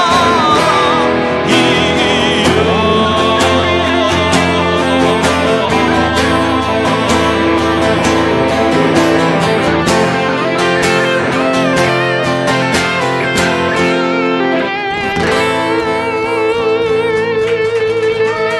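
Instrumental guitar break: a semi-hollow electric guitar plays a lead over an acoustic guitar accompaniment, after a sung note with vibrato fades out about a second in. Near the end a single long note is held with vibrato.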